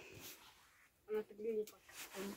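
A quiet voice murmuring a short phrase about a second in, otherwise near silence.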